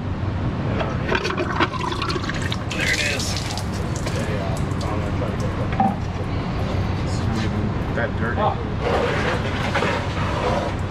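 A torque converter is pulled off a Ford 10R80 automatic transmission's input shaft, and transmission fluid runs and splashes out of the bellhousing over a steady noisy background. There are a few scattered clicks of metal on metal.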